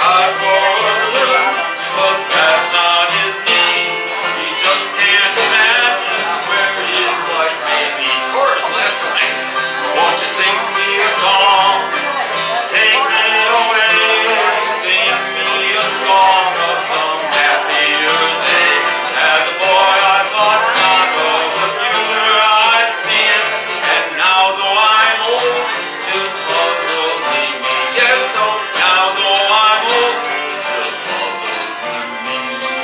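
Live country music on two strummed and picked acoustic guitars, an instrumental stretch with no singing.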